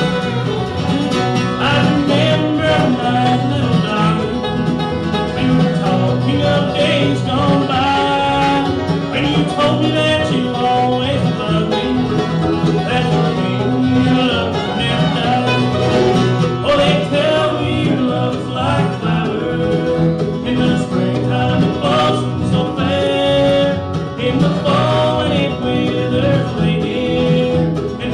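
Live bluegrass band playing: mandolin, acoustic guitar, fiddle, five-string banjo and upright bass, with a man singing lead.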